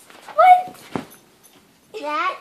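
A short high-pitched cry about half a second in, then a single thump about a second in.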